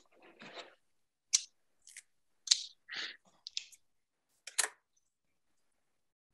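Cigar cutters snipping the caps off cigars: a string of short, sharp snips and clicks, about six over three seconds.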